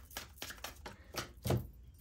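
Tarot cards being handled and laid on a wooden tabletop: a scatter of light taps and card flicks, with a short duller knock about one and a half seconds in.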